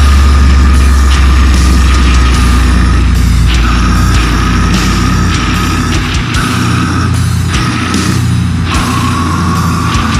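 A deathcore band playing live with distorted electric guitars and drums, coming in suddenly at full volume with a very heavy low end. Partway through, the low end breaks into choppy, stop-start hits.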